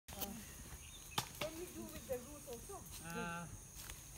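Several people talking at a distance, with one voice calling out a single drawn-out note about three seconds in, over a steady high insect drone and a few sharp clicks.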